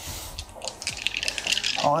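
A handful of six-sided dice clattering together in the hand, many quick irregular clicks. The dice are being readied for a batch of eight armour saving throws.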